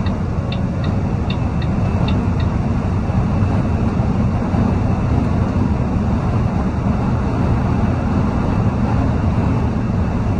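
Steady drone of a semi-truck's engine and tyres heard inside the cab at highway speed. A turn signal clicks about three times a second for the first couple of seconds, then stops.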